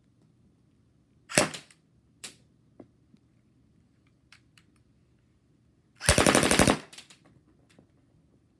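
Toy pistol firing: a single sharp shot about a second and a half in and a lighter one soon after, a few faint clicks, then a rapid automatic burst of about a dozen shots lasting under a second near the end.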